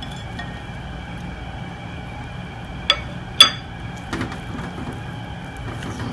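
Soft wet sounds of a floured fish fillet being turned in beaten egg in a ceramic bowl, with two sharp clinks against the bowl about halfway through, the second louder and briefly ringing, over a steady background hum.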